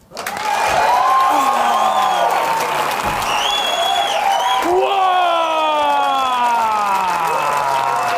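Studio audience applauding and cheering, starting suddenly, with long whoops from several voices that slide down in pitch.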